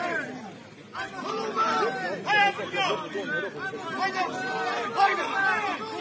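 Several spectators talking and calling out at once, their voices overlapping. There is a brief lull just after the start, and the voices pick up again about a second in.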